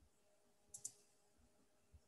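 Near-silent room tone broken by two quick, sharp clicks close together a little under a second in.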